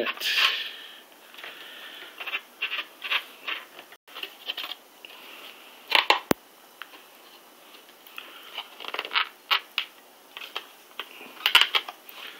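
Light plastic clicks and knocks as the outer shell of a Seagate GoFlex Desk enclosure is tapped and worked loose from the bare hard drive inside. They are scattered, with a sharper pair of clicks about six seconds in.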